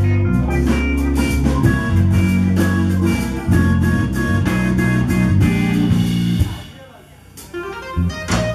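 A live blues band playing: electric bass guitar and drum kit keep a steady beat under sustained keyboard chords. About six and a half seconds in the band stops for a brief break, then comes back in together just before the end.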